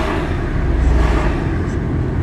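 Car driving, heard from inside the cabin: a steady low rumble of engine and tyre noise, a little louder about a second in.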